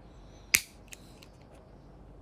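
Plastic case of a USB flash drive cracking once, sharply, as a thin blade pries it open along its seam, followed by a faint click and a few light ticks of the blade on the plastic.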